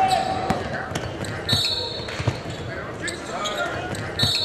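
A basketball being dribbled on a hardwood gym floor, bouncing several times at an uneven pace, with a short high squeak about one and a half seconds in. The sound rings in the large gym.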